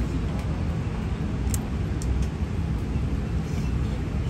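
Steady low rumble with a few faint, brief clicks in the middle.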